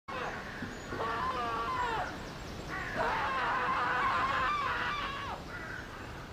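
Birds calling in woodland: two long, wavering calls, the first about a second in and the second from about three to five seconds in, with short chirps over them.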